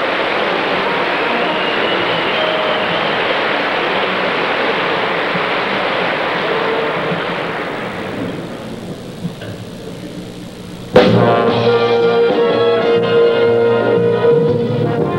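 Audience applause that fades away after about eight seconds, then a sudden loud entry of a full orchestra with brass about eleven seconds in.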